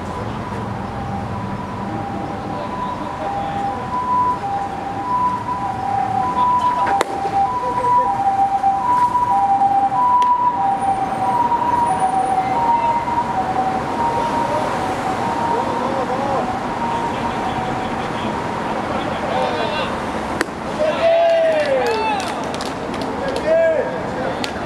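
Two-tone emergency-vehicle siren, alternating between a high and a low tone, growing louder and then fading out about two-thirds of the way through. Short voices calling out near the end.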